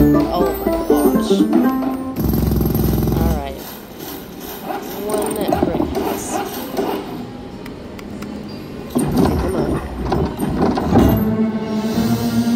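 Huff N' More Puff slot machine playing its bonus-round music and sound effects as the reels spin and house symbols land, with a short low rumbling effect about two seconds in.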